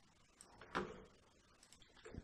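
Near silence with one short, faint knock about three quarters of a second in.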